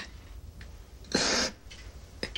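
A man crying: one short, sharp sob about a second in.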